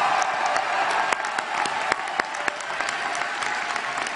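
Large audience applauding steadily, a dense patter of many hands clapping.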